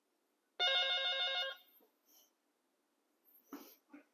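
A corded desk telephone's electronic ringer sounding one trilling ring about a second long as an incoming call arrives.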